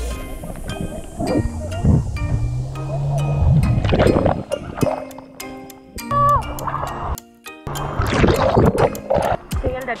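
Background music over water splashing and gurgling close to a camera held at the water's surface, in several loud bursts as water-skis churn through the lake and a skier goes under and comes back up.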